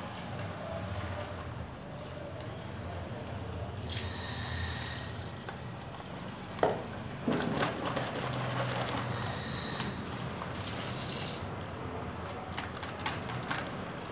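Plastic packet crinkling and rustling as gloved hands shake powder out of it into a plastic bucket, with a sharp tap about halfway through, over a low steady hum.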